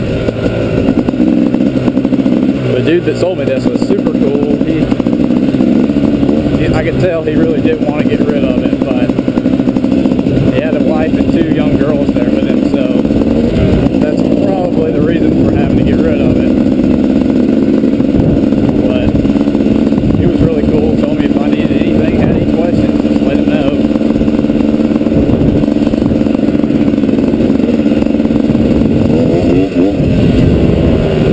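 2012 KTM 250 XCW's 250 cc two-stroke single running under load as the bike is ridden over grass, its pitch climbing over the first couple of seconds and then holding steady.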